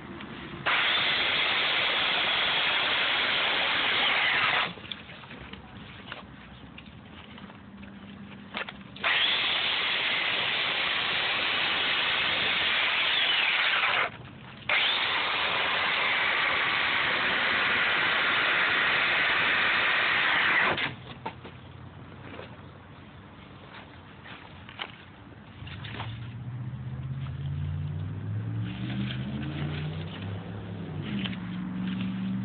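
Corded electric chainsaw cutting into expanded polystyrene foam, running in three bursts of about four to six seconds with short pauses between them. A low droning hum builds up in the last few seconds.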